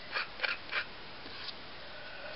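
Craft knife scraping and peeling set wax off a painted board: a few short, light scratches.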